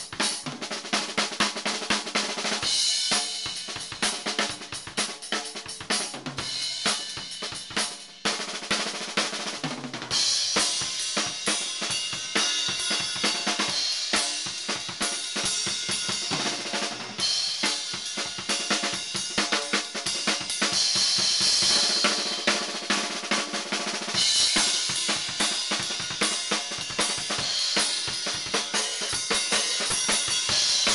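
Drum solo on an acoustic drum kit: fast, dense snare, tom and bass drum strokes. A brief drop comes about eight seconds in, and from about ten seconds in the cymbals ring over long stretches.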